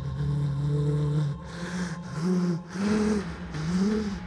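Dramatic background score: a held low synth note, then three short notes that swoop up and fall back, over repeated whooshing swells.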